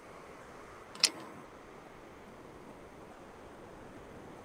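Faint steady room hiss from a home microphone, with a single short, sharp click about a second in.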